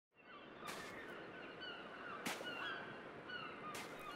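Faint outdoor birdsong: many birds calling in quick, short, downward-gliding whistles. Three soft crunches about a second and a half apart, like footsteps on sand, are heard under the calls.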